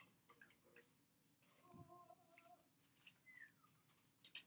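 Near silence: room tone with a few faint, brief sounds.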